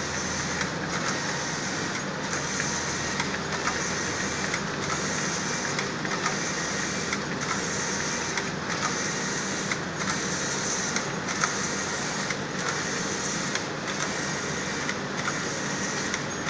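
Cixing GE2-52C computerized 12-gauge jacquard flat knitting machine running, its two-system cam carriage traversing back and forth across the needle beds. The steady mechanical whir breaks briefly a little more often than once a second as the carriage reverses at each end of its stroke.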